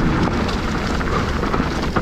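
Wind rushing over the microphone of a mountain bike descending fast on a loose dirt trail, with the tyres on loose dirt and the bike rattling over the rough ground.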